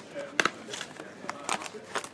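Hands handling a booster box of trading cards and its packs: a few sharp taps and clicks, the loudest about half a second in and smaller ones near the end.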